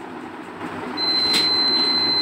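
A digital multimeter's continuity buzzer (HTC DM-85T) sounds a steady high-pitched beep starting about a second in. The probes have found continuity: the PCB trace from the compressor relay connects to the driver IC's pin 11.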